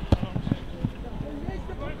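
Players' and coaches' shouts on a football pitch, faint and distant, with a sharp knock just after the start as the loudest sound and a few dull low thumps after it.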